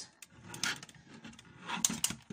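Hands handling a large plastic Transformers Siege Jetfire action figure while it is posed: plastic rubbing, a few light clicks and a sharper tap near the end.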